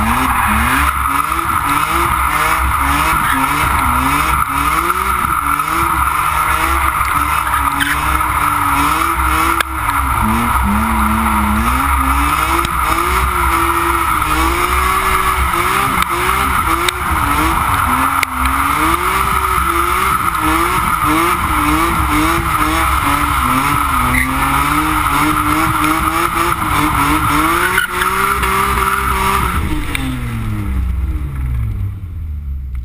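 BMW S54B32 3.2-litre straight-six revving hard, its revs rising and falling constantly with the throttle, while the tyres squeal without a break through a long smoky slide. Near the end the squeal stops and the revs drop away.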